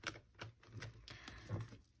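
Faint, irregular light clicks and rustles of hands handling paper banknotes and a clear plastic cash envelope.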